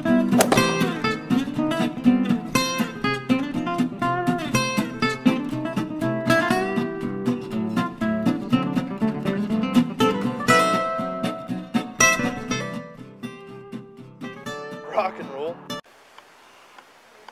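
Background music of fast plucked acoustic guitar, cutting off suddenly near the end to faint room tone.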